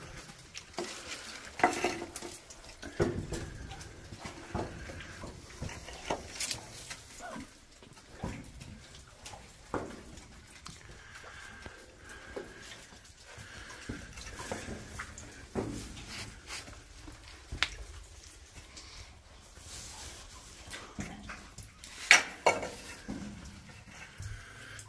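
Boots splashing and squelching through shallow muddy water and knocking on loose wet rock, as irregular steps, splashes and clatters inside a narrow mine tunnel. The loudest knocks come near the end.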